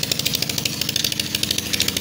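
A nearby engine running steadily with a fast, even pulse.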